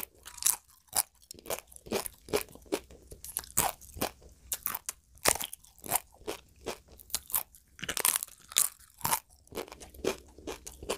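Close-miked chewing of crisp food, a steady run of crunches about two a second.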